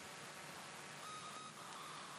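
Faint hiss of a quiet room, with one brief faint steady high tone about a second in.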